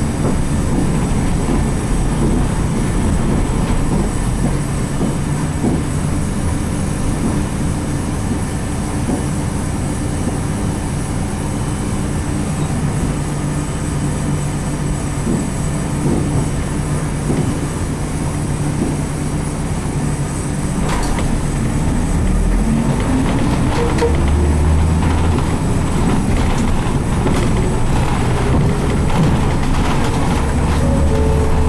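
Cabin running sound of a 1995 Nissan Diesel RM (U-RM210GSN) route bus under way, its FE6 diesel engine and driveline running steadily. About 22 seconds in, the engine note rises in pitch as the bus accelerates, then settles into a deeper, slightly louder note.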